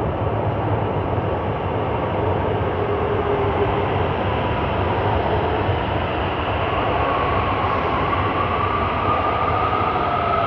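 Metro train approaching an underground station through the tunnel: a steady rumble, with a whine that rises in pitch from about seven seconds in as the train nears the platform.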